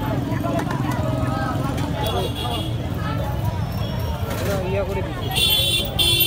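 Busy street ambience: people talking over a steady low rumble of traffic, with a short high-pitched tone near the end.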